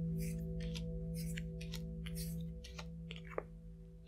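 Playing cards being dealt and laid down on a table: a string of light card-stock clicks and slides, about three a second, the sharpest near the end. Under them, soft background music of steady held tones.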